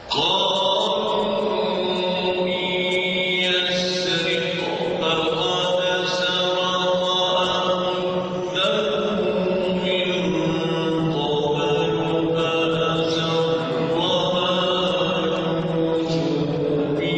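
A man reciting the Quran in the melodic chanted style, into a microphone. He sings phrases of long held notes with brief breaks between them.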